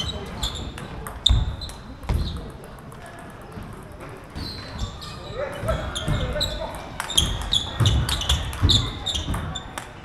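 Table tennis rally: the plastic ball clicking sharply off the bats and the table, several hits a second with a short lull about a third of the way through, over low thuds of players' feet on the wooden floor. Voices are heard briefly in the background.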